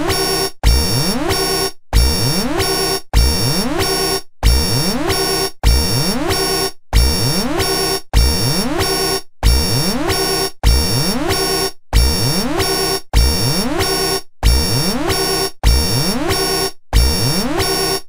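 Electronic alarm sound effect going off over and over, about every one and a quarter seconds: each cycle opens with a rising sweep, then a harsh buzzing tone, with a brief gap before the next.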